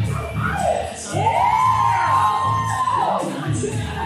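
Recorded pop music with a steady bass beat played through a PA system. In the middle a voice glides up, holds a long high note, and falls away.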